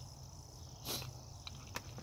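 A short rustle of potting soil about a second in, with a couple of small clicks after it, as gloved hands pack soil around a tree in a plastic bucket. Insects chirp steadily and faintly in the background.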